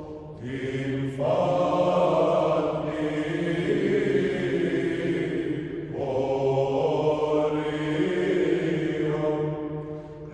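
Orthodox church chant: voices sing a slow melody over a steady held low drone. The melody pauses briefly about a second in and again around six seconds.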